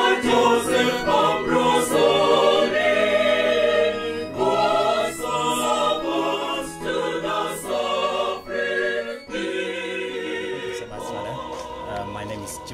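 Choral music: a choir singing sustained phrases, fading down over the last few seconds.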